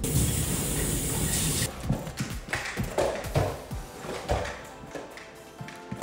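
Kitchen faucet running into a stainless-steel sink, a steady hiss of water that stops suddenly after about a second and a half, under background music that runs on through the rest.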